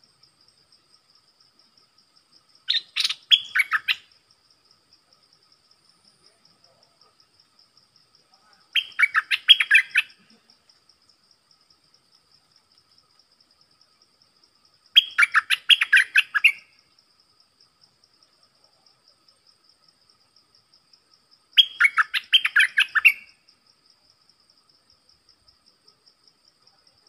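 Bulbul (the nok dok taeng, a decoy bird) singing four short phrases about six seconds apart, each a quick run of loud notes lasting a second or two. A faint steady high insect buzz runs underneath.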